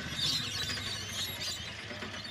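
Rainbow lorikeets screeching and chattering faintly in scattered short squeaks, over a low steady rumble.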